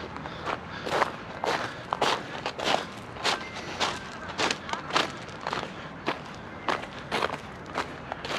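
A person walking at a steady pace over gravel and grass, about two footsteps a second.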